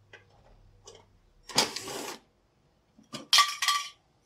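A screwdriver loosens the screw on a mini-split outdoor unit's electrical access cover with faint ticks, then come two loud scraping, clattering bursts as the cover is worked off the unit and handled.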